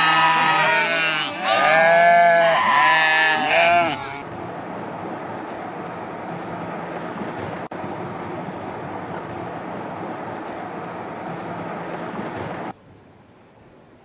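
A flock of sheep and goats bleating, many loud calls overlapping for about four seconds. Then a steady rushing noise until it cuts off suddenly near the end.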